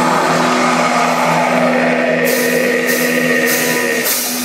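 Metal band playing live at full volume, holding a sustained distorted chord that drones steadily without a vocal line. About halfway through, bursts of bright, splashy high noise come in roughly every half second over it.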